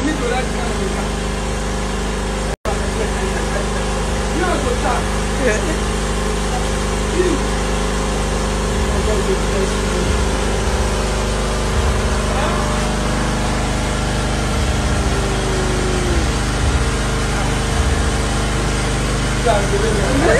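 Steady hum of an idling car engine, with faint voices underneath; the sound drops out for an instant about two and a half seconds in.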